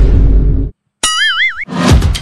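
Comic sound effects: a loud, rushing noise burst with a deep low end that cuts off abruptly, then after a brief gap a boing-like tone that wobbles up and down, and another rising rush of noise near the end.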